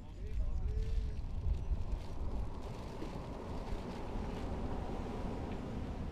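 Steady outdoor rumble of wind buffeting the microphone, with the wash of surf on the shore beneath it.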